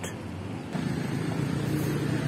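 A motor vehicle's engine running, a low steady drone that comes in about a third of the way through, over outdoor background noise.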